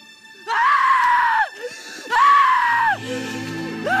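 A woman screaming in grief: two long, high anguished cries, each held at one pitch and then falling away, the second starting about two seconds in. A low, sustained music chord comes in under the second cry.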